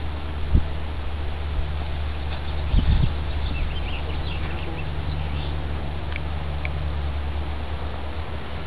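Outdoor ambience: a steady low rumble with faint, short high chirps that sound like birds. There are two brief bumps, one about half a second in and a louder one about three seconds in.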